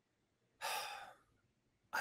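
One short breath from a man at a close microphone, about half a second long, a little over half a second in. Otherwise near silence.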